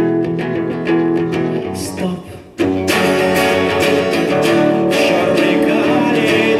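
Acoustic guitar playing in the instrumental break of a song: picked notes, a short break a little over two seconds in, then fuller strumming. A man's voice comes back in near the end.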